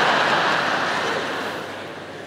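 A large theatre audience laughing together after a punchline, the laughter dying down near the end.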